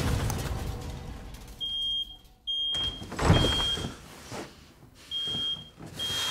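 Smoke alarm beeping: a high-pitched tone in short beeps of about half a second, four of them, starting about one and a half seconds in. A loud low thud comes about three seconds in, after a noisy first second.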